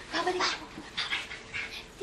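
A girl whimpering and crying in fright, with two short bursts of high cries, one near the start and one about a second in.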